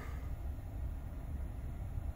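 Low, steady rumble inside the cabin of a parked Hyundai Kona with its engine idling.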